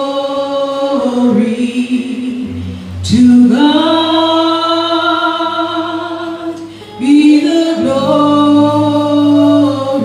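Praise team singing a slow gospel chorus in long held notes, with a new phrase starting about three seconds in and another about seven seconds in.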